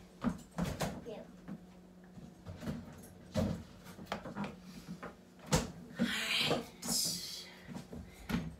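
Kitchen refrigerator door being opened and shut, with a series of knocks and clicks, a louder thump a little before halfway and a sharp click soon after, then a brief hissy rustle.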